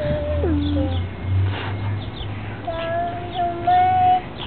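A toddler girl singing wordlessly in a high voice: a held note that slides down about half a second in, then a long, steady high note near the end.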